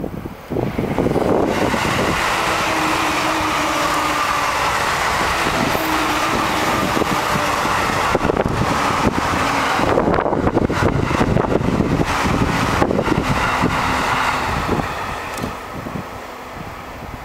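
Two JR East E531 series electric trains passing each other at speed: the rolling noise of steel wheels on rail with a steady motor hum, rising about half a second in and fading near the end. Wind buffets the microphone.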